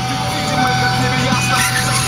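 Music playing through a car's stereo, heard from inside the cabin, with steady held tones.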